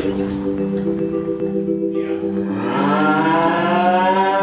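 Dairy cow mooing: one long, loud call that rises in pitch, starting about two and a half seconds in and still going at the end, over steady sustained tones. Her rescuers take this repeated crying for a mother cow calling for a missing calf.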